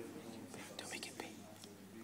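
Whispering and faint, muffled speech.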